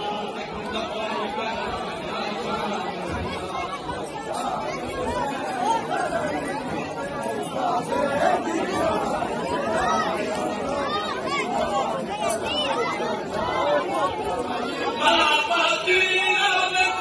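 A large crowd of men talking over one another, a steady babble of many overlapping voices with no single speaker standing out. Near the end, a louder group of voices rises above it.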